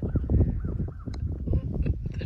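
Wind buffeting the microphone: a heavy, uneven low rumble, with a few faint clicks.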